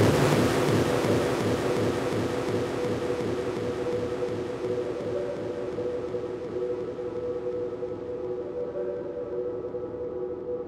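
Breakdown of an electronic dance track: the beat and bass drop out, and a noise sweep slowly fades and darkens over a steady held synth pad tone.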